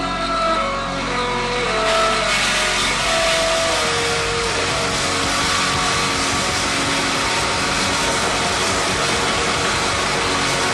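Live heavy rock band with a heavily distorted electric guitar: a few held guitar notes in the first four seconds give way to a dense, droning wash of distortion.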